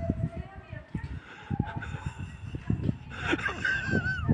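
Footsteps on a cobbled stone floor in a vaulted gateway passage, a string of short, irregular low thuds. A short high-pitched call, bending in pitch, comes near the end.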